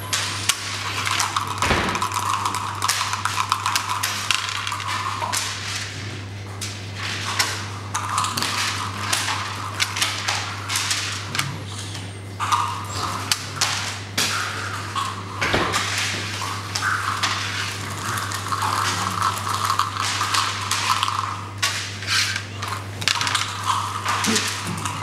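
Backgammon checkers clicking and sliding on a wooden board as moves are played, with dice landing on the board among them; a couple of heavier knocks stand out, and a steady low hum runs underneath.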